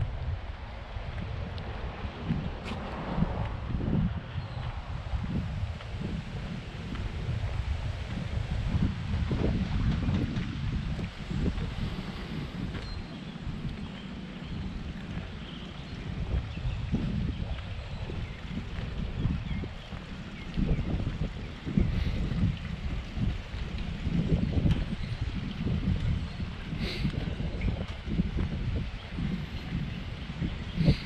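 Wind buffeting the microphone: an uneven low rumble that rises and falls in gusts, with a few faint sharp clicks.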